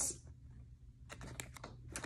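Dried, paint-coated paper sheet crackling as it is held and flexed: a faint cluster of about six quick clicks starting about a second in.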